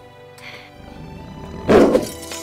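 Soft orchestral score, then near the end a sudden loud creature roar: a designed roar for a large furry beast as it lunges.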